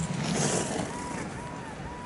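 Skis hissing and scraping over packed snow, with wind rushing on the microphone; a louder surge of scraping comes in the first half-second.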